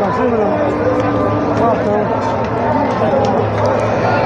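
Crowd hubbub: many men talking and calling out over one another, with no single voice standing out.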